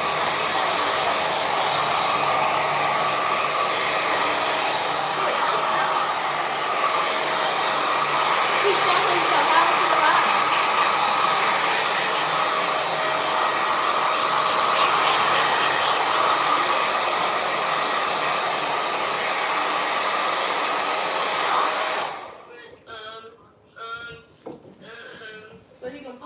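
Handheld hair dryer running steadily on the braids and scarf-wrapped hair, with a steady whine over its blowing air, switched off near the end.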